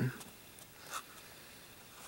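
Faint, brief rustle of a plastic blister-pack toy card being handled, about a second in, over quiet room tone.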